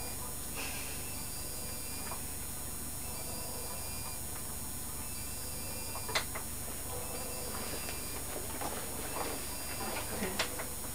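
Steady background hiss with a few scattered faint clicks and taps, and one sharp click about six seconds in.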